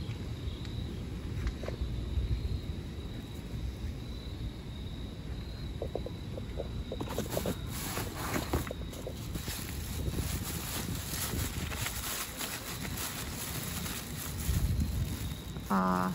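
Plastic garbage bags rustling and crinkling as they are handled and moved, thickening from about seven seconds in, over a low steady background and a faint steady high tone.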